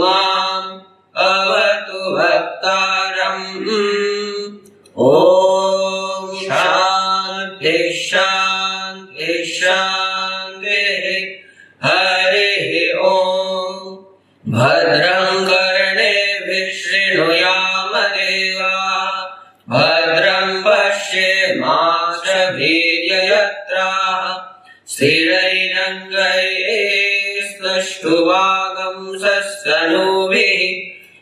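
Student reciting Sanskrit Vedic mantras in a chanting voice, in phrases of several seconds separated by brief pauses for breath.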